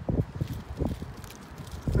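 Wind buffeting the phone's microphone outdoors: an uneven low rumble in gusts, with a faint rustle.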